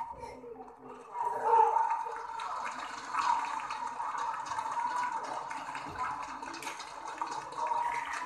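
Arena crowd noise as a badminton rally ends: a loud surge about a second and a half in, then a steady din of cheering and chatter.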